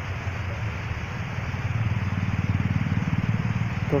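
An engine running steadily in the background: a low drone with a fast, even pulse.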